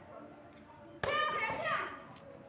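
A kick smacks a hand-held taekwondo kick pad about a second in, with a girl's loud shout right on the strike, over low children's chatter.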